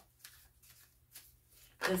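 A deck of tarot cards being shuffled by hand: a few soft, scattered flicks and rustles of card on card.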